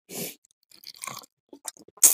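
Close-miked eating sounds: a piece of fish being broken up by hand and chewed, with crunching in a few short bursts.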